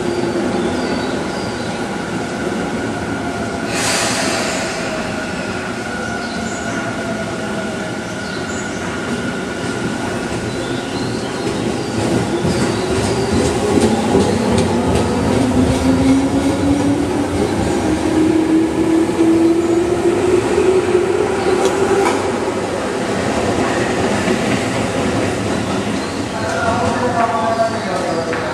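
A Tobu 10030 series electric commuter train with field-chopper control pulls away from the platform and accelerates. There is a brief hiss about four seconds in. From about halfway through, the motor and gear whine rises in pitch as the train gathers speed, with wheel clicks over the rail joints as the cars pass.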